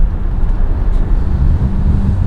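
Inside a moving car's cabin: a steady low engine and road rumble while driving, with a low steady hum coming in about one and a half seconds in.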